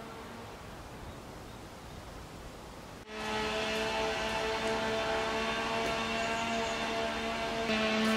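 Quiet background music of held, steady chords over a faint outdoor hiss; about three seconds in it breaks off and comes back louder with more notes.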